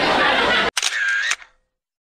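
Room chatter cuts off abruptly, then a camera shutter sound effect: a click, a brief whir and a second click.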